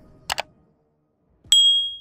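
Sound effects of a subscribe-button animation: a quick double mouse click, then about a second and a half in a bright single bell ding that rings for about half a second.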